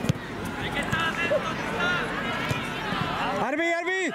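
Voices of players and spectators shouting across a youth football pitch, with a sharp knock of a ball kick just after the start. Near the end one voice gives a loud, held shout.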